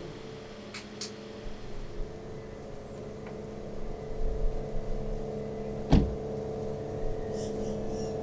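A single loud thump about six seconds in, a van door being shut, over a steady low hum.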